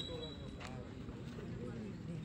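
Faint background chatter of voices from players and spectators around the court.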